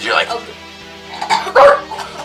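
Background music with three short, loud yelps: one at the start and two close together near the end.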